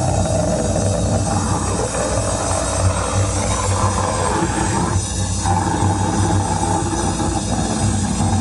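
A live band playing loud, heavily distorted punk/hardcore: distorted guitar, bass and drums in a dense wall of sound. The part changes abruptly right at the start and again about five seconds in.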